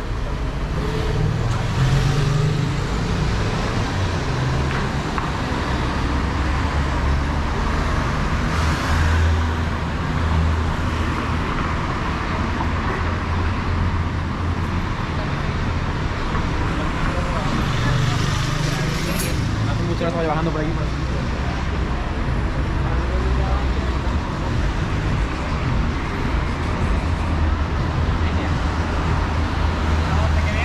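City street traffic: cars passing with a steady low rumble, with passersby talking around it and a sharp click a little past the middle.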